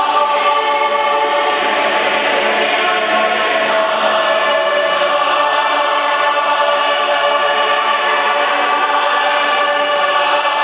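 A choir singing a Swahili gospel song in steady, sustained chords, in an abbey church.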